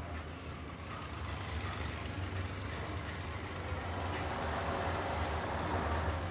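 Motorcycle engine idling steadily, slowly getting a little louder.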